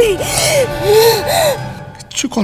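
A person gasping and crying out in distress: a run of about four breathy vocal cries, each rising and falling in pitch.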